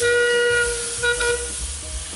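Steam whistle of Metropolitan Railway No. 1, a Victorian steam tank engine, blown twice: a blast of well under a second, then a shorter one about a second in, over a steady hiss of steam.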